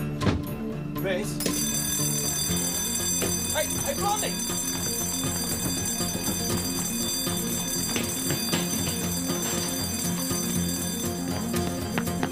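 Background music score with a bass line that steps between notes and sustained high tones.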